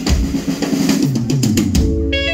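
A live band's drum kit, with bass, playing chilena dance music. It ends in a quick run of drum strikes, and sustained keyboard tones come in near the end.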